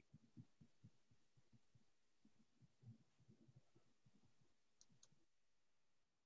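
Near silence: faint room tone with scattered soft, low clicks.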